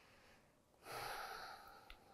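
A woman's single deep breath, about a second long, starting just under a second in and fading away, with a faint mouth click near the end.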